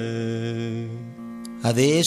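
A man's voice ending a sung line of Kannada gamaka recitation, holding one long steady note that fades out about a second in. A man starts speaking near the end.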